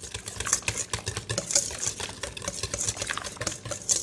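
Wire balloon whisk beating a thin, liquid batter in a stainless steel bowl: a fast, irregular run of clicks and wet swishes as the wires hit the bowl.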